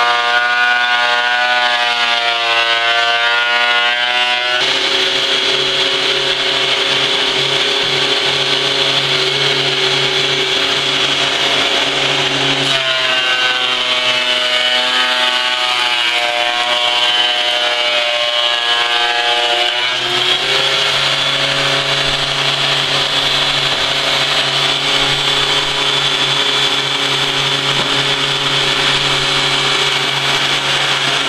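A ProCraft PD-2300 benchtop thickness planer running loud. It starts with a high motor whine while running free. About four seconds in, a board enters the cutterhead: the pitch drops and the noise of planing wood fills in. The whine rises again around thirteen seconds as it runs free, then drops once more under a second cut around twenty seconds.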